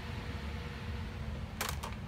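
Steady low hum, with two sharp clicks about a quarter of a second apart near the end.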